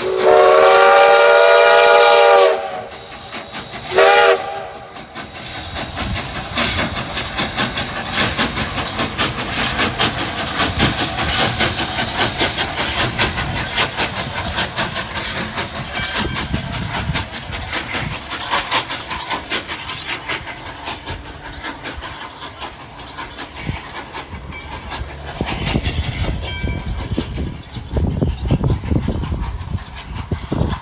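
Steam whistle of a 2-8-0 Consolidation steam locomotive, Nevada Northern No. 93: one long blast, then a short toot about two seconds later. The locomotive then passes close by with a rapid, steady chuffing exhaust and rattling running gear.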